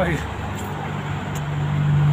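Street traffic: a motor vehicle's engine running nearby, a steady low hum that grows louder toward the end.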